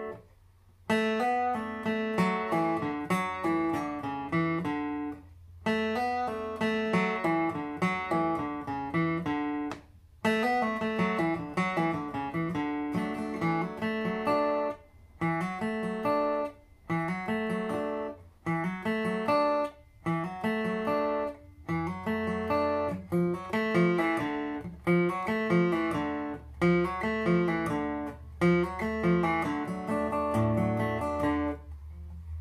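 Steel-string dreadnought acoustic guitar flatpicked in a fast single-note bluegrass solo, in runs of quick notes broken by short pauses.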